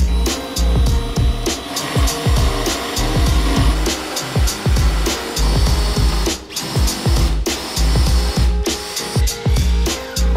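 Background music with a steady beat. Under it, for several seconds in the first half, a hand drill runs, boring into plywood with a Forstner bit.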